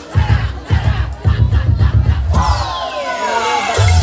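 Dance-routine music over loudspeakers, with heavy bass beats, and a crowd shouting over it. A bit past halfway, a long tone glides steadily down in pitch.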